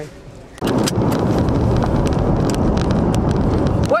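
Loud, steady road and wind noise inside a moving car's cabin, cutting in suddenly about half a second in.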